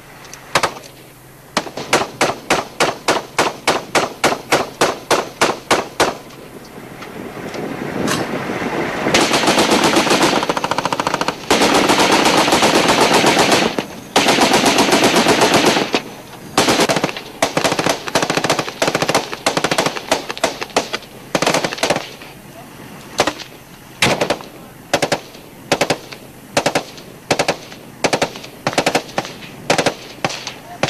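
Machine-gun fire, including .50 calibre guns: a string of evenly spaced shots at about three a second, then a long stretch of dense, continuous fire from about nine seconds in, then scattered single shots and short bursts.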